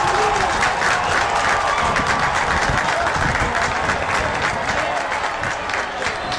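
Football stadium crowd cheering and clapping a goal, a dense steady roar with constant hand-clapping.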